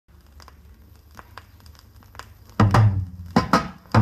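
Vinyl reggae single playing on a turntable: quiet lead-in groove with scattered surface clicks and crackle over a low hum, then the song's intro comes in about two and a half seconds in with a few loud, bass-heavy hits.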